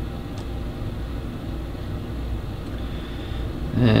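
A steady low hum and rumble with no distinct events, and a faint high tone late on.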